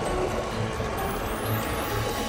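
Cartoon sound effects of reptilian monsters charging through shallow water: a dense, noisy rush of splashing, over background music.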